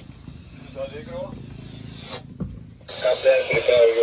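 Quiet low hum with faint voices, then about three seconds in a marine VHF radio comes on loud with a voice speaking over its narrow, tinny speaker: the bridge authority calling the boat.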